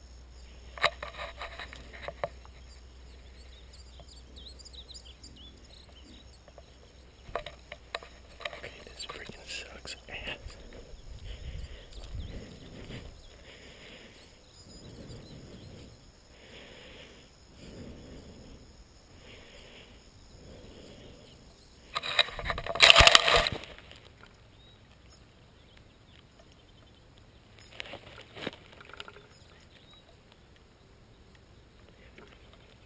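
Footsteps and rustling through dry grass and brush, with soft, evenly spaced steps for a stretch. About 22 seconds in there is a much louder scraping burst lasting about a second and a half.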